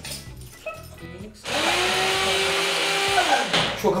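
Electric mini chopper (food processor) running in one burst of about two seconds, chopping the lahmacun topping. The motor spins up quickly, holds a steady whirr, then winds down as it is released.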